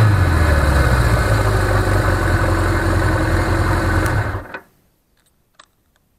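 Suzuki GS750E air-cooled inline-four engine idling steadily, then switched off about four and a half seconds in, dying away within a fraction of a second. A couple of faint clicks follow.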